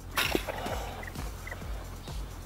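Outdoor background noise with two short, faint bird calls about a second and a second and a half in, and music low underneath.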